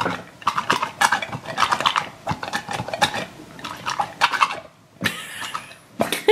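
Two soft squishy unicorn toys rubbed and pressed against each other, squeaking in quick irregular runs like animal chatter, with a short pause near the end.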